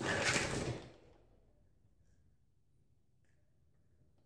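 A brief rustling swish lasting about a second, then near silence broken by a faint click or two.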